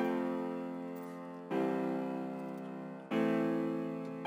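A chord progression played back from a software instrument, with a keyboard-like tone. A new chord is struck about every second and a half, and each one rings and fades before the next.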